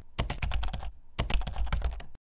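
Computer-keyboard typing sound effect: rapid runs of keystroke clicks in bursts, with a short pause just under a second in.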